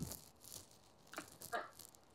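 Near quiet, broken by a few faint, brief rustles and clicks of a handheld phone being moved.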